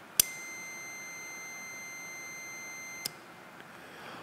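A 2021 Ford Mustang Mach-E GT high-voltage battery positive contactor clicks closed when its 12-volt coil is energized. A multimeter's continuity tester then beeps steadily for about three seconds, the sign that the contacts are closed and carrying a connection. A second, softer click as the contactor opens ends the beep.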